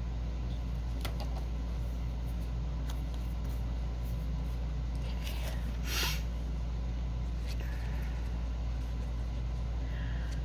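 A steady low hum in the background, with a few faint taps as a gold paint pen and other craft supplies are handled, and a brief rustle about six seconds in.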